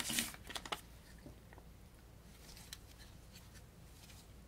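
Hands handling a small assembled LEGO brick figure over a paper instruction sheet: a short rustle and a few small plastic clicks in the first second, then faint occasional ticks.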